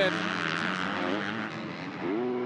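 Motocross bikes' engines running on the track, a steady engine note with a buzzing haze above it.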